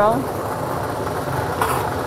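Lottery ball-draw machine running with a steady mechanical whir, and a brief rattle of balls near the end.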